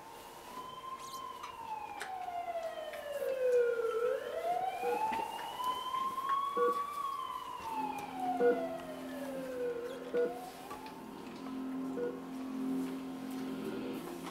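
Emergency-vehicle siren wailing, its pitch slowly rising and falling about every six seconds, with sustained music notes coming in about eight seconds in. It is a video's soundtrack sound effect played over room speakers.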